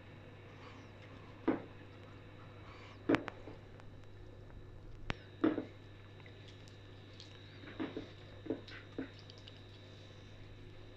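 Hand squishing a raw fish fillet into a wet spice-and-garlic marinade in a glass bowl: soft, short wet squelches every second or two over a low steady hum.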